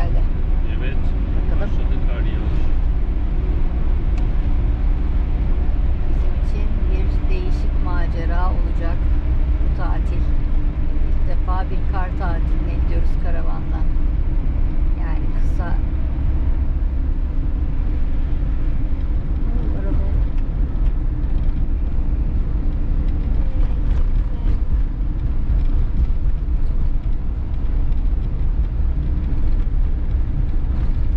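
Steady engine and road drone heard inside the cab of a Fiat Ducato camper van driving on a wet road, with faint voices in the middle.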